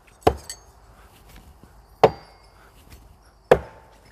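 Three throwing axes striking a wooden target one after another, about a second and a half apart; each hit is a sharp thwack followed by a brief metallic ring.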